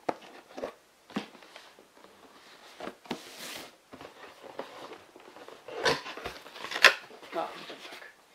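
Cardboard retail box being handled and its lid opened by hand: scattered clicks and knocks of cardboard, a short rubbing sound about three seconds in, and a sharp knock about seven seconds in.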